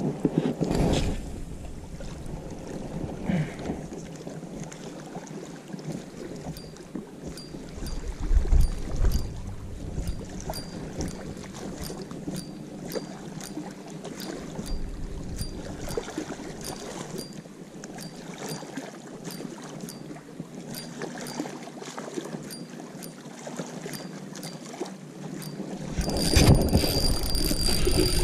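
Spinning reel being cranked on a retrieve, ticking lightly about one and a half times a second, over small waves lapping and wind on the microphone. Near the end, a louder rush of wind and handling noise.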